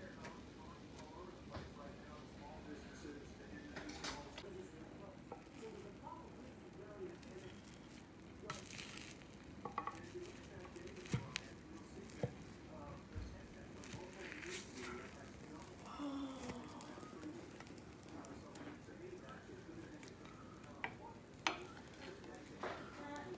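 A spatula scraping and tapping in a glass baking dish as a square of baked egg, cheese and biscuit casserole is cut and lifted out onto a plate. Soft scrapes and squelches, with a few sharp clicks.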